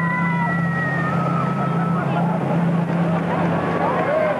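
Water-ride boat splashing down into the pool, a steady rush of water and spray under a low hum, with riders' long high screams in the first two seconds and shorter shouts near the end.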